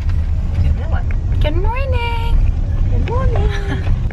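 Steady low road and engine rumble inside a moving car's cabin. A voice rises briefly over it twice, once about a second and a half in and again near the end.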